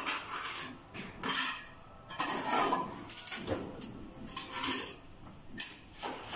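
Trowel scooping cement mortar from a pan and packing it into a wall chase over electrical conduit: a series of irregular scrapes and clinks of the blade on the pan and wall.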